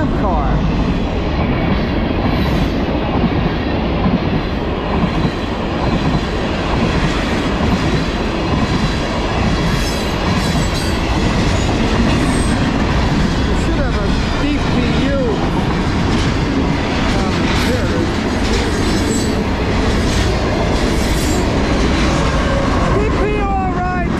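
A long CSX manifest freight train's cars rolling past at close range, a steady loud rumble with wheels clattering over the rail joints. Wheel flanges squeal briefly about halfway through and again near the end.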